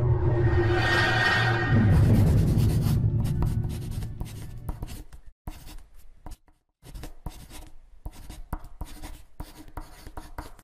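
Sound effect of a marker writing: it opens with a loud continuous rush that fades over the first few seconds, then breaks into separate short strokes with gaps between them.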